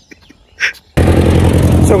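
Near silence for about the first second, then loud roadside noise with a steady low rumble starts abruptly, typical of road traffic.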